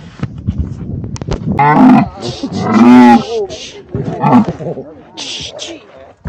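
Dromedary camel groaning loudly as it kneels down to let its rider off: two long drawn-out calls about two and three seconds in, and a shorter one a second later.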